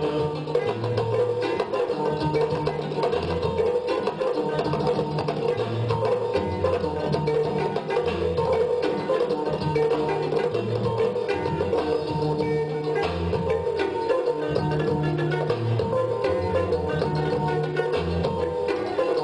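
Live band music with a kora, drum kit and electric guitar: a bass line of changing notes under a steady percussive beat, playing without a break.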